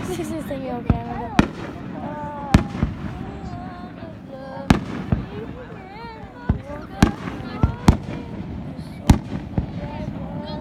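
Fireworks shells bursting overhead: about a dozen sharp bangs at irregular intervals, some close together in pairs.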